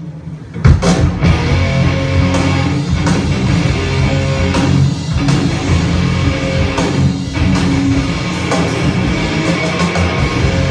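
Live band playing loud rock music on electric guitar, bass and drum kit, crashing in about a second in after a brief lull.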